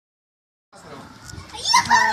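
A child's high voice calling out near the end, its pitch falling, after a silent start and faint background noise.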